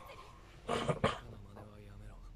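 A brief, faint vocal sound about two-thirds of a second in, followed by a low, quiet held hum.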